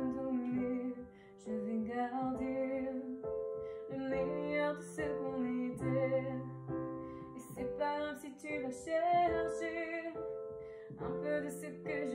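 A woman singing with vibrato, in phrases, over sustained piano-voiced chords played on an electronic keyboard.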